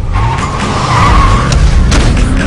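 Car tyres squealing over a loud engine rumble, a steady high screech that is strongest for about the first second and a half.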